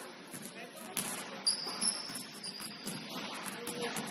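Basketball game sounds in a large echoing gym: indistinct players' voices, a sharp ball bounce about a second in, and a high sneaker squeak on the hardwood floor soon after.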